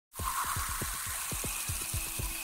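Wind rushing over a phone's microphone, with a low, even throb pulsing about six or seven times a second like an engine running. The sound starts suddenly just after the start.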